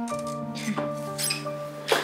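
Background score music of slow, long-held notes, with a low note coming in just after the start.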